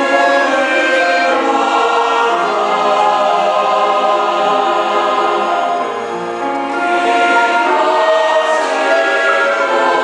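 Mixed choir of men and women singing a sacred piece in held chords, easing off briefly about six seconds in and then swelling again.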